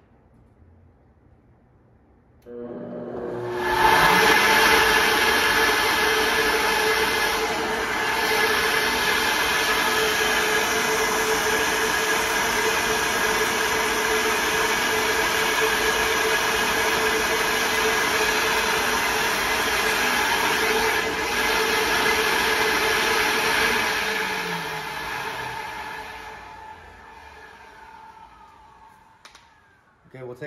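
Cylinder-head flow bench's vacuum motors switched on about two and a half seconds in, whining up to speed and running loud and steady while drawing air through the intake port. Near the end they are shut off and spin down, the whine falling and fading away.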